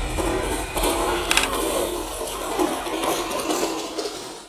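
The brushless electric motor of a DEERC 200E 1:10 RC car whining as the car drives over gravel, with the tyres crunching on the stones.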